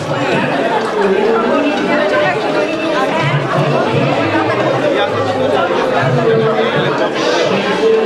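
Crowd chatter: many people talking at once in a large hall, with no single voice standing out.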